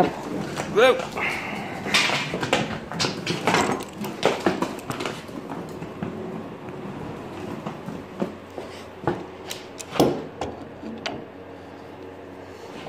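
Workshop handling noise: scattered knocks and clatter as a bar clamp is fetched and handled at a wooden bench. The loudest is a sharp knock about ten seconds in.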